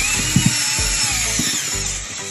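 Cordless electric screwdriver running as it drives a screw into a three-gang electrical box, its motor whine wavering in pitch, over background music.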